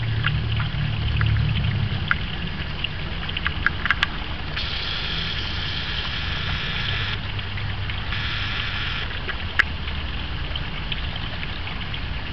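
A garden pond fountain spraying water that splashes steadily onto the pond's surface, over a low rumble. The splashing swells louder twice in the middle, and a few sharp clicks come about a third of the way in and again later.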